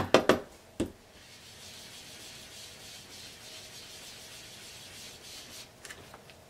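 A few quick taps of an ink sponge against a dye ink pad in the first second, then a steady soft rubbing as the sponge works pink ink across cardstock.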